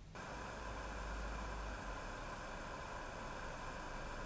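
ACEMAGIC AD15 mini PC's cooling fan running under full CPU load: a quiet, steady airy hiss with a few faint high tones, measured at about 35 dBA at 30 cm.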